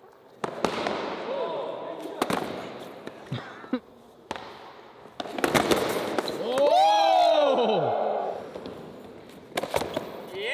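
Onewheel boards knocking and slapping onto a concrete floor in sharp single hits every second or few, mixed with riders' shouts, including a long rising-then-falling 'whoa' about seven seconds in.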